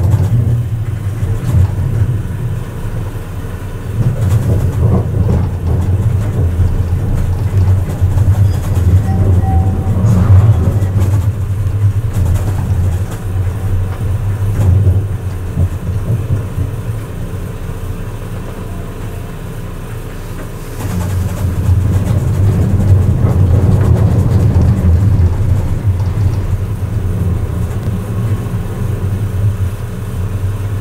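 Siemens Avenio tram running along the rails, heard from inside the driver's cab: a steady low rumble of wheels and running gear. It eases off for a few seconds about two-thirds of the way through, then picks up again.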